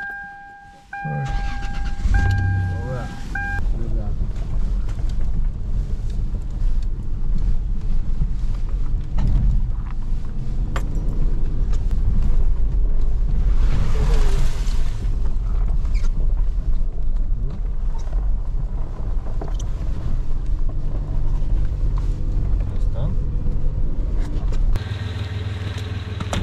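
Toyota 4Runner heard from inside the cab, driving on a rough dirt track. The engine and road rumble run low and steady, with frequent knocks and rattles over the bumps, and settle to a steadier hum near the end. A two-note vehicle warning chime beeps a few times at the start.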